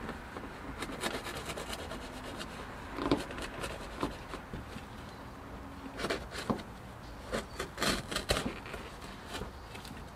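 Carpet being rubbed, pushed and tucked by hand around a manual shifter's rubber boot. It makes irregular scrapes and knocks, in clusters about a second in, around three to four seconds, and again from about six to eight seconds.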